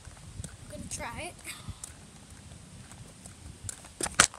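Skateboard wheels rolling over pavement: a steady low rumble with occasional clacks as the wheels cross joints and cracks.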